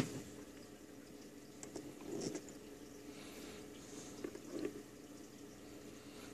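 Faint handling sounds of multimeter test probes being pushed into the sockets of a resistor decade box: a few soft knocks and rubs, spread through the few seconds, over a faint steady hum.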